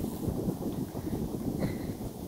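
Wind buffeting the phone's microphone: an irregular, low rumble with no clear pattern.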